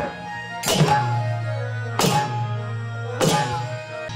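Hand-played barrel drum in folk devotional music, struck in slow, heavy strokes about every 1.3 s, three in all. Each stroke rings out over a steady low hum.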